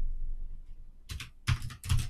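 Computer keyboard keystrokes: a few sharp key clicks about a second in and a couple more near the end.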